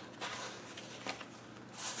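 Paper rustling and rubbing as thick, painted art-journal pages and a loose card are handled, faint at first, with a louder swish of a page being turned near the end.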